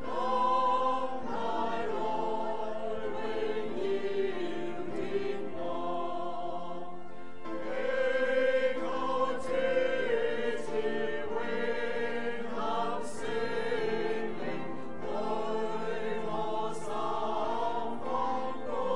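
A choir singing a hymn in several voices, holding long sustained notes.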